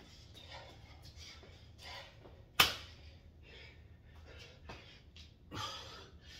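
A man breathing hard in short puffs during burpee reps, with one sharp slap about halfway through, the loudest sound, as of a body hitting the floor.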